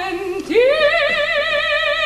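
Woman singing opera: a lower note dips and breaks off, then about half a second in she sweeps up to a high note held with a wide vibrato.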